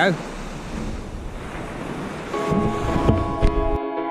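Small waves breaking on a sandy beach, with wind buffeting the microphone. About two-thirds of the way in, background music with long held notes fades in over the surf.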